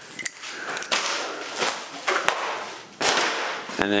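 Stiff old aircraft covering fabric crackling, with several sharp snaps about two-thirds of a second apart.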